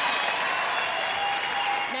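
Live audience applauding steadily.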